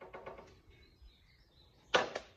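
Handling clatter of a red cordless drill mounted on a Hookdrill rig as it is let go: a run of light clicks and rattles in the first second, then one sharp knock near the end.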